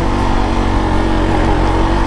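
Single-cylinder engine of a KTM RC sport bike running steadily at low road speed, with wind rumbling on the rider's camera microphone.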